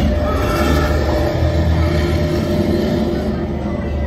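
Loud, steady low rumble with a rushing hiss over it that eases off near the end: a sound effect from the attraction's show soundtrack.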